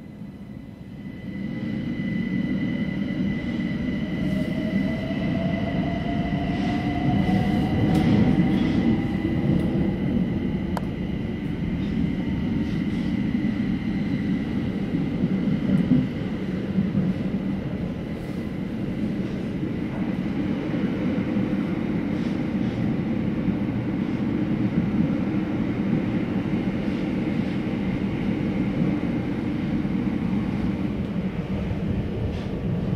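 Class 378 Electrostar electric multiple unit pulling away, heard from inside the carriage. A whine rises in pitch over the first ten seconds as the train accelerates, then the train runs on with a steady rumble of wheels on rail and a few clicks.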